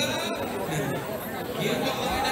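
Many voices talking at once in a large, crowded hall: steady crowd chatter with a voice close by.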